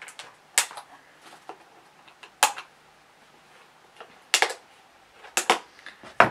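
Wire cutters snipping metal twist ties inside a cardboard box: several sharp clicks about two seconds apart, with two in quick succession near the end.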